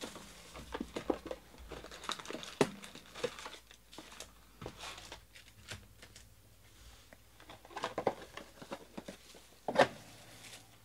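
Plastic shrink-wrap crinkling and tearing as it is stripped off a box of trading cards, then foil card packs rustling and clicking as they are pulled out and laid on the table. A sharper knock comes just before the end.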